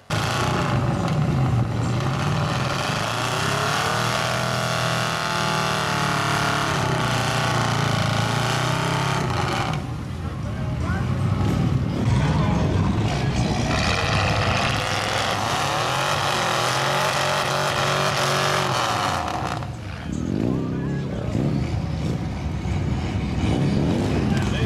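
Engines of lifted, big-tyred mud trucks revving hard under load, rising and falling in pitch, as one tows a pickup stuck deep in mud. The sound breaks off and starts again about ten seconds in and near the end.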